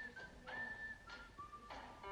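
A faint whistled tune: a few short high notes, a longer note about half a second in, then a lower held note from about halfway.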